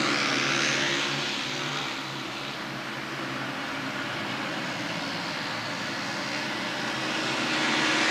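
Speedway bikes' 500cc single-cylinder methanol-fuelled engines racing at full throttle round the track, a steady drone that eases a little and builds again near the end as the pack comes round.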